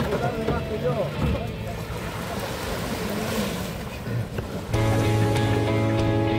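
Small waves washing on a sandy shore with some wind noise, after a voice trails off at the start. About three quarters of the way through, background music with long held notes comes in suddenly.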